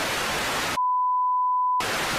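Television static hiss cut off about a second in by a steady, pure test-tone beep that lasts about a second, after which the static hiss returns.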